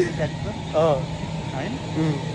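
Short bursts of men's voices and laughter over a steady low hum.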